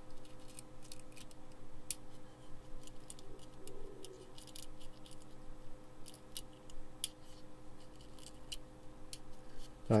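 Faint, irregular light clicks and ticks of LED legs and a circuit board knocking against a metal front panel as the assembly is wobbled in the hands to seat the LEDs in their holes. A steady low hum runs underneath.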